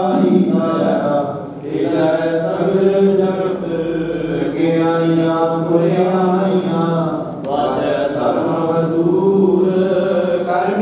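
Devotional hymn chanting in long, held, slowly wavering notes, with short breaths or pauses about one and a half seconds in and again near seven and a half seconds.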